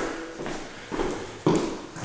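Footsteps on a hardwood floor: two footfalls about half a second apart.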